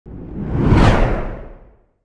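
Whoosh sound effect of an animated channel-logo intro: a rushing swell that rises in pitch and loudness to a peak about a second in, with a low rumble under it, then fades out.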